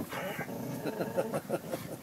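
Border Collie growling over the bone in his mouth, a drawn-out grumble that wavers in pitch. He is guarding the bone and refusing to give it up.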